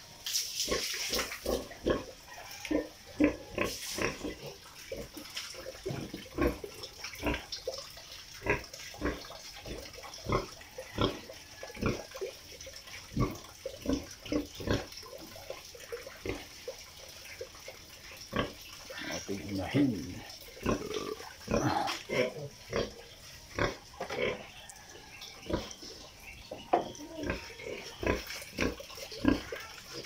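Sow in its pen making short, irregular grunts and eating noises, one or two a second. Water runs briefly into the trough at the start.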